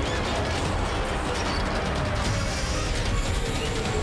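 Sound effect of a giant cartoon robot's mechanical parts moving: a rapid, steady ratcheting clatter of gears and joints, with music underneath.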